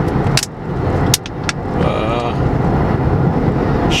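Steady low road-and-engine rumble heard from inside a moving car's cabin, with a few sharp clicks in the first second and a half.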